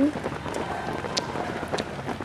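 Footfalls of several runners' shoes on an asphalt road as they pass close by: a few sharp ticks over a steady outdoor hiss.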